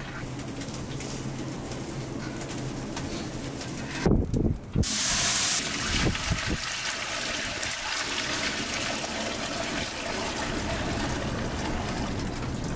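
Hot fish broth being poured from a large metal bowl through a wire hand sieve into a metal pot, the liquid splashing and running steadily. A few low knocks come about four seconds in, then a brief loud hiss.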